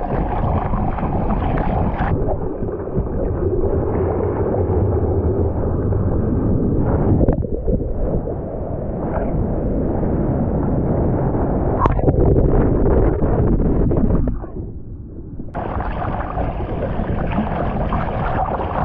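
Ocean surf churning and splashing right over a bodyboard as a wave breaks on the rider, close to the microphone. The sound turns quieter and muffled for about a second about three-quarters of the way through.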